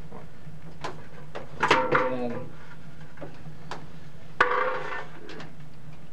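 Small sharp clicks of a wristwatch being handled and its buttons pressed while its timer is set, over a steady low hum. Short muttered voice sounds come about two seconds in and again about four and a half seconds in.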